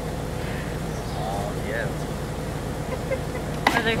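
A vehicle engine idling steadily, with faint distant voices over it; a person starts talking close by near the end.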